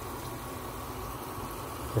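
Steady low rushing hum from the stove while a pot of sliced peppers and onions in vegetable stock simmers.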